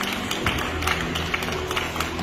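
Indoor sports-arena ambience: music over the loudspeakers with a steady low bass, and scattered sharp taps and claps from the crowd and court several times a second.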